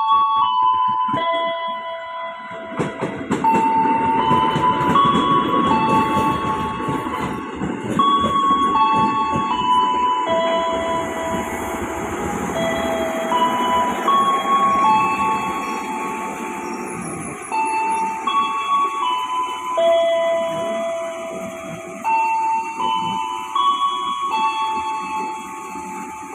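KRL electric commuter train running past close along the platform: a rumble from about three seconds in, with rapid clicking from the wheels on the rails, easing off toward the end. A melody of held notes plays over it throughout.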